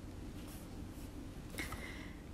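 Faint pen and paper sounds from a workbook page being written on and handled, with a short soft sound a little before the end.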